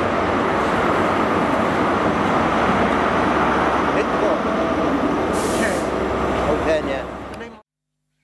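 A GWR passenger train passing close along a station platform: a steady, loud rush of wheel and air noise, with a short hiss about five seconds in. The sound cuts off abruptly near the end.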